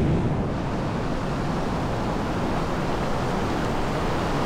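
Ocean surf washing in over the shallows, a steady rush of foaming water, with wind on the microphone.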